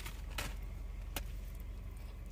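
Steady low rumble of a car driving, heard from inside the cabin, with a couple of faint clicks.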